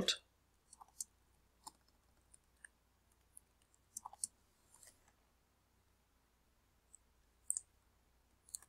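Faint, scattered clicks of a computer keyboard and mouse: a dozen or so single clicks with pauses between, bunching up about four seconds in and again near the end.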